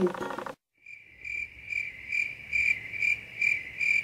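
Cricket chirping, edited in as a comic 'awkward silence' sound effect: one high chirp repeated evenly about twice a second, starting about a second in after a brief dead silence.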